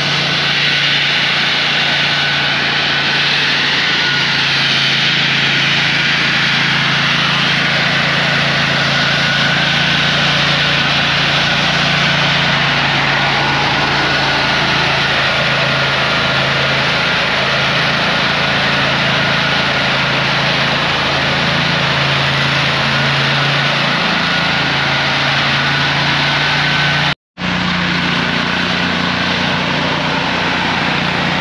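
Leaf blower engine running steadily at high speed, with a loud rush of air and a steady high whine. The sound cuts out for an instant about 27 seconds in.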